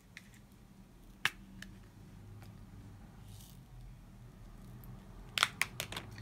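Light plastic clicks and taps of diamond painting drills and their container being handled as they are put away. There is a sharp click just after a second in, a short soft rattle in the middle, and a quick run of clicks near the end, over a low steady hum.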